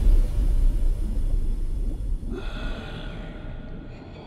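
Deep low rumble of a trailer bass hit dying away, with faint high ringing tones coming in a little over two seconds in.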